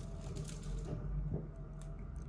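Tarot cards being handled: a few faint clicks and rustles of card stock as a deck is turned over in the hands, over a low steady hum.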